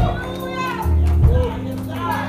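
Sustained low chords from an instrument backing the sermon, shifting to new notes about a second in. A voice calls out over them in rising-and-falling tones.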